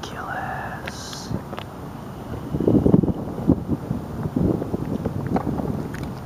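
Wind buffeting the microphone, swelling in gusts about two and a half seconds in and again around four and a half seconds, with indistinct voices underneath.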